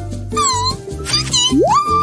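Cartoon background music with a steady bass line, overlaid by short gliding, meow-like vocal sounds: a brief falling one early and a long rising one about one and a half seconds in.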